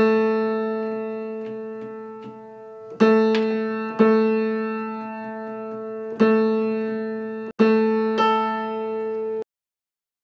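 Piano octave A3–A4 struck together five times, each time left to ring and die away, the last one cut off suddenly near the end. The octave is being checked for beats while the A3 is shimmed up: still not clean at first, pretty good by the end.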